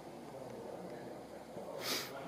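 Quiet room tone, then near the end one short, sharp puff of breath through the nose, about a third of a second long.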